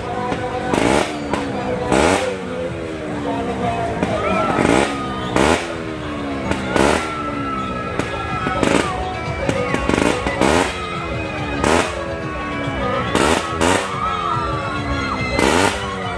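Loud fairground din: engines whose pitch falls again and again, about once a second, over music, with sharp bangs at irregular moments.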